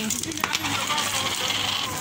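A coin dropped onto a wooden shop counter: a sharp click about half a second in, then a thin high ringing for about a second as it settles.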